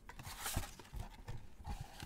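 Gloved hands handling a cardboard trading-card box: about half a dozen light knocks and taps with rustling as the box is opened and tipped to get the packs out.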